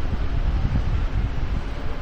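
Steady low rumbling background noise with a faint hiss above it.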